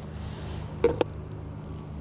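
A steady low mechanical hum in the background, with a brief vocal sound and a single sharp click about a second in.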